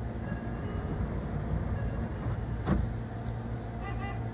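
A stationary Meitetsu electric train at the platform, its onboard equipment humming steadily, with one sharp click a little under three seconds in.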